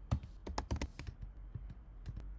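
Typing on a computer keyboard: a quick string of separate key clicks, busiest from about half a second to a second in.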